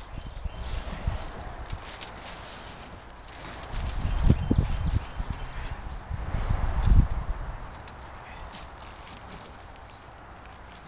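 Hard, dry propolis chunks clicking and rattling as they are picked off an aluminium tray and dropped into a small plastic bag, with two louder low thumps about four and seven seconds in.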